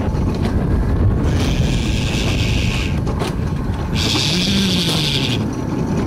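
Alpine coaster sled running down its metal tube rail: a steady rumble of the wheels mixed with wind on the microphone. A high hiss comes twice, each time for about a second and a half.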